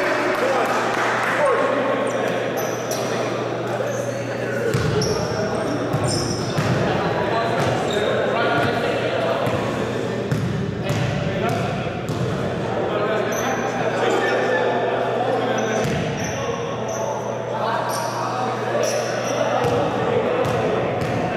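Echoing gym sound of a basketball game: players' voices and shouts ringing in a large hall, with a basketball bouncing on the hardwood floor, over a steady low hum.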